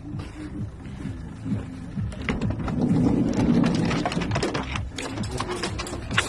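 A van door being opened by hand: a run of clicks, knocks and rattles, loudest about three seconds in, from the door and the metal dog cages inside.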